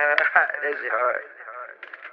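A short burst of voice with a thin, radio-like sound, lacking low and high end, lasting about a second before trailing off into fainter fragments.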